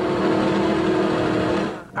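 Offshore racing catamaran's engines running flat out at high speed, a steady drone at an even pitch that cuts off near the end.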